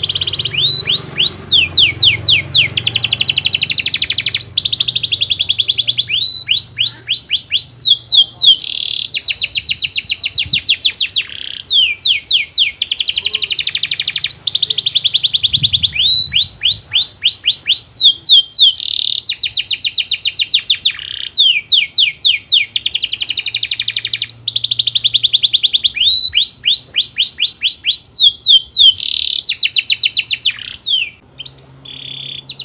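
Domestic canary singing a continuous song: runs of quick, falling whistled sweeps alternate with fast buzzy rolls, the pattern repeating every five seconds or so.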